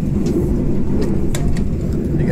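Steady low rumble of a passenger train carriage running along the track, heard from inside the cabin. A couple of sharp clicks about a second and a half in come from a metal-framed fold-out tray table being pulled from the seat armrest.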